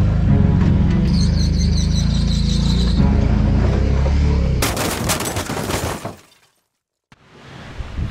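Small car engine running in a low, steady drone for about four and a half seconds, then a loud burst of noise lasting about a second and a half that cuts off suddenly into silence.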